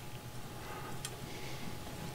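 Quiet steady background hum with one light click about a second in, from a dial-indicator set checker being handled on a sawmill band blade's tooth.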